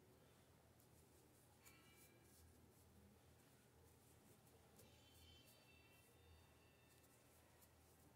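Near silence: faint room tone with a few faint ticks, and two brief faint high tones about two and five seconds in.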